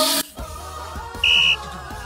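A short, loud, high blast on a referee's whistle about a second and a quarter in, over background music.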